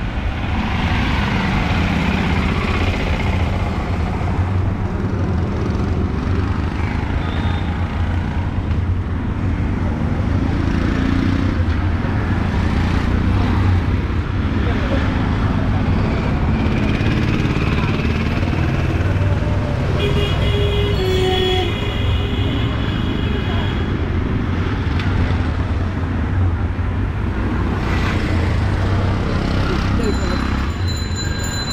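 Busy street traffic: a steady rumble of vehicle engines, with people's voices in the mix and a vehicle horn sounding for about a second and a half some twenty seconds in.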